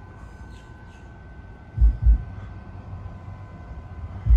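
Four 18-inch subwoofers on a Crescendo 6K amplifier hitting two short, very deep bass thumps about a third of a second apart, midway through, over a low steady hum. The bass note sits around 49 Hz.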